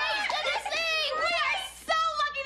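High-pitched excited voices squealing and talking over one another.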